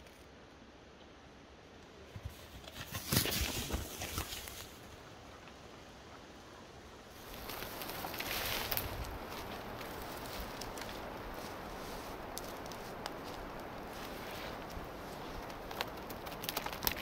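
A leopard's paws and claws scraping and rustling on the bark of a fallen tree trunk as it climbs along it. There is a burst of scratching about three seconds in, then a steadier hiss with scattered light ticks in the second half.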